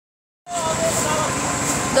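Steady outdoor background noise with a faint voice in it, starting about half a second in after a moment of silence.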